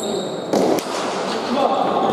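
A pelota ball struck during a hand-pelota rally: one sharp knock about half a second in, over steady crowd voices.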